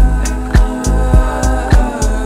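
Slow electronic dance music: a steady kick drum just under two beats a second under sustained chords, deep bass and hi-hat ticks.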